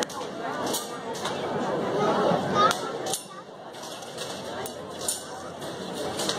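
Indistinct voices talking, with no words that can be made out. They drop to a quieter level about three seconds in, and a few faint short ticks are scattered through.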